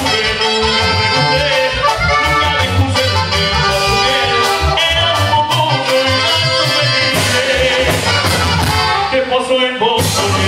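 Live Mexican banda music played loud and steady: saxophones and accordion carrying the melody over a drum kit, with a singer at the microphone.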